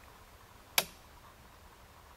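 Johnson Controls A419 temperature controller's output relay clicking once as it pulls in: the controller cutting in as the probe temperature reaches 83°F. The single sharp click comes a little under a second in.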